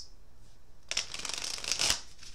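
A deck of divination cards being shuffled by hand: a quick run of rapid card flicks starting about a second in, ending with a sharper snap as the deck is squared.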